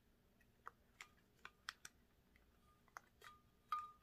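A dozen or so faint, scattered clicks and taps as a ceramic light-up tree with plastic bulbs is handled and turned, with a faint thin high tone near the end.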